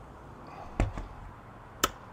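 Molded fiberglass hatch lid in a boat's bow being lowered and shut: a dull thump just under a second in, then a sharp click near the end as it closes.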